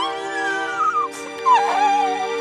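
A cartoon frog's sad, wailing vocal that glides slowly down in pitch, then a shorter wavering cry about a second and a half in, over slow music with held chords.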